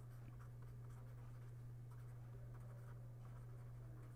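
Pen scratching on paper as a few words are handwritten in short strokes, faint, over a steady low hum.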